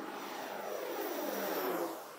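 Twin-engine turboprop aircraft climbing out just after takeoff and passing close by at low height. Its propeller and engine note drops in pitch as it goes past, and it fades slightly near the end.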